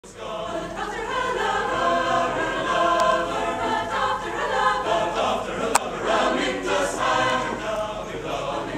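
Mixed choir of men's and women's voices singing. Two short clicks cut through the singing, about three and six seconds in, the second louder.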